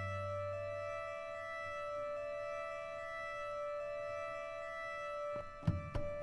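Solo cello through a live looping rig: a steady, organ-like high drone of layered cello notes, with a low cello note dying away in the first second. Near the end most of the drone cuts off and a knock follows, as a loop is deleted by accident.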